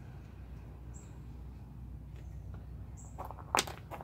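Two quick sharp clicks about three and a half seconds in, the second louder, as a small cut piece of circuit board is dropped onto a plastic folding table. A low steady hum and a few faint high chirps run underneath.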